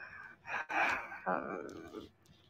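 A woman's breathy vocal sounds close to the phone microphone: a short breathy burst like a gasp about half a second in, then a brief wordless murmur.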